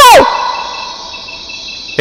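A voice trails off with a falling pitch at the start, then quiet night ambience of crickets chirping in a thin, high, pulsing trill.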